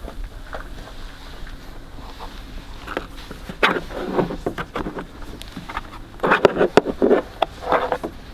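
Handling sounds of a rubber fuel line being held and moved against a generator's plastic housing: soft rustling, then scattered short clicks and knocks in the second half.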